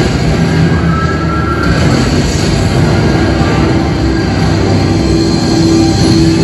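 Soundtrack of a roller-coaster ride film played loud over cinema speakers: music over a steady rumble of wheels on track.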